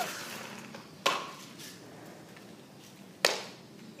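Two sharp knocks about two seconds apart, over a faint steady hiss.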